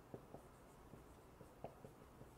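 Dry-erase marker writing on a whiteboard: a string of faint, short taps and scratches as the letters are formed.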